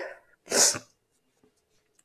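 A woman sneezes once into a tissue, a single short burst about half a second in.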